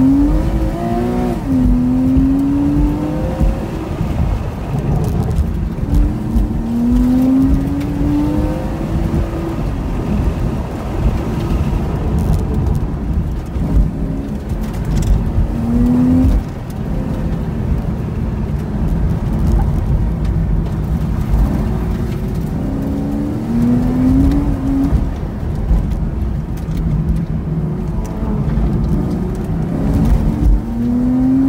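A 2009 Porsche Cayman's flat-six engine heard from inside the cabin, revving up and easing off again and again as the car accelerates and slows, over a steady low road rumble.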